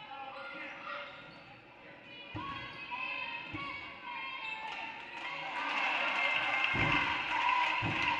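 Basketball thudding on a hardwood gym floor a few times, with players' and spectators' voices echoing in the hall that get louder over the last couple of seconds.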